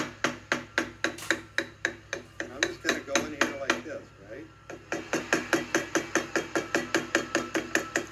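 A wooden baton tapping the spine of a small fixed-blade knife (Olfaworks SG1-OD) in quick, even strikes, about four a second, driving the blade down through the corner of a small block of lightweight wood to split off a thin piece. The strikes pause briefly about four seconds in, then resume at the same pace.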